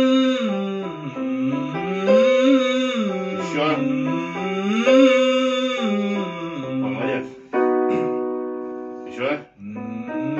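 A male voice sings a vocal warm-up exercise, a run up and down the scale three times over, with keyboard playing the notes alongside. Near the end the keyboard holds a chord to move the exercise up a key, and there is a quick intake of breath before the next run.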